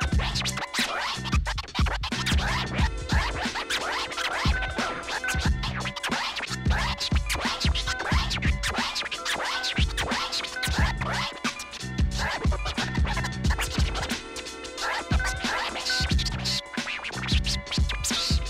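Turntable scratching: a vinyl record pushed back and forth by hand and chopped with the mixer's fader, giving fast rising and falling scratch sweeps over a looping beat.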